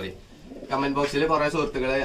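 Domestic pigeons cooing in a loft, under a man's speech that starts about two-thirds of a second in.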